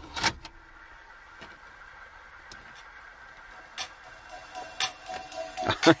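Car cassette deck clunking as it takes a cassette adapter, then a few seconds of low mechanism sound and small clicks. Music from a portable CD player fed through the adapter starts to come through the car speakers near the end.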